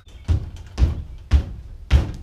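A man's feet thumping down on the top of a Stanley Vidmar steel cabinet as he bounces his weight on it, four heavy thumps about half a second apart. The cabinet takes his roughly 215 pounds rock-solid.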